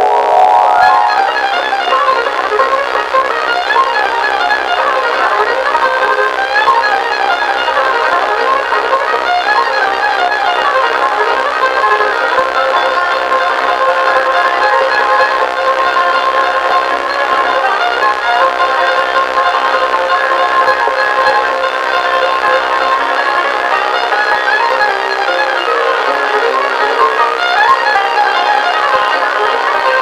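A fiddle-led string band playing a tune, the fiddle on top with banjo and guitar behind it. The recording is thin Super-8 film sound with almost no bass.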